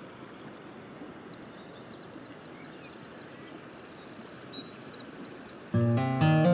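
Outdoor field recording: a steady rush of background noise with a songbird chirping in quick high runs through the middle. Near the end, loud acoustic guitar chords come in suddenly.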